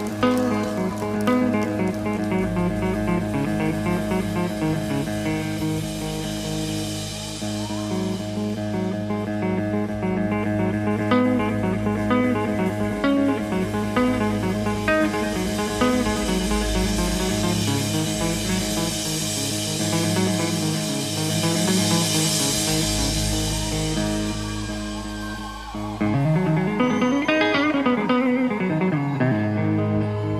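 Live rock band playing the instrumental opening of a song, led by guitar over bass and drums. Near the end the band gets louder and a pitch sweep rises and falls.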